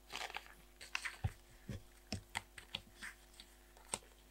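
Paper and card pages of a tiny spiral-bound planner being handled and turned, with a string of light, irregular clicks and rustles.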